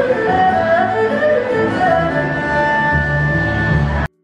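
Erhu played solo by a busker: a bowed melody of held notes and pitch slides over a steady low accompaniment.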